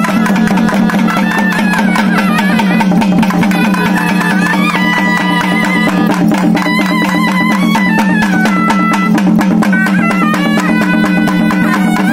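Live Tamil festival folk music: a pipe plays a stepping, held-note melody over a steady low drone, with fast, dense drumming on frame drums.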